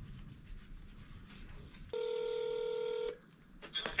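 Telephone ringback tone heard over a phone's speaker: one steady ring lasting about a second, starting about two seconds in and cutting off abruptly. A voice answers just at the end.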